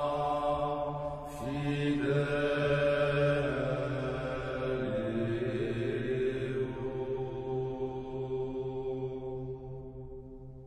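Sacred vocal chant: long held sung notes over a steady low drone, the melody stepping to new pitches a few times and fading toward the end.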